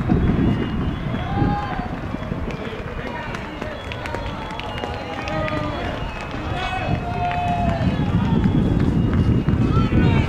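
Wind buffeting the microphone in low, surging gusts, with indistinct voices talking throughout.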